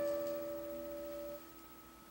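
Acoustic guitar chord ringing out and fading between sung lines; the highest note stops about one and a half seconds in, leaving near silence.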